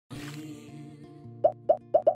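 Intro jingle: sustained synth tones, then about two-thirds of the way in a quick run of cartoon plop sound effects, three pops about a quarter second apart.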